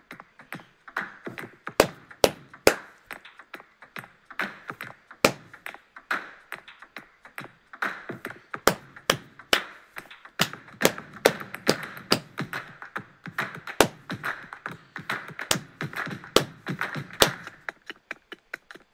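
Layered clapping rhythm: hand claps and percussion hits from three interlocking parts over a four-beat count, several sharp strikes a second.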